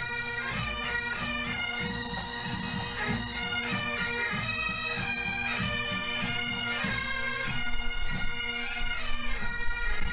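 Pipe band playing a march: a bagpipe melody over a steady drone, with a regular drum beat.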